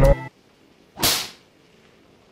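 A single short whoosh sound effect about a second in, a swish of noise that swells and fades within half a second, the editing transition into a cut to another clip.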